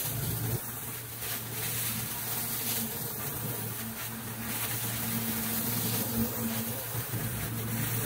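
Pressure-washer rotary surface cleaner running over wet concrete: a steady hiss of spray over a continuous low buzzing drone.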